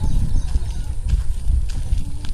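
Footsteps on a dirt track, with a heavy wind rumble on the microphone.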